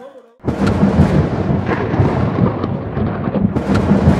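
Thunder rumbling, starting suddenly about half a second in and holding loud and heavy with crackling through the rest, laid under a logo shown with lightning.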